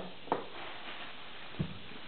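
Faint handling sounds on a workbench over a steady background hiss: a light tap just after the start and a low thump about a second and a half in.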